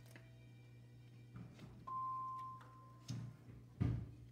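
A large picture book is handled and its page turned, giving a few rustles and knocks, the loudest a thump near the end. Over a low steady hum, a single clear high tone sounds about two seconds in and fades away within about a second.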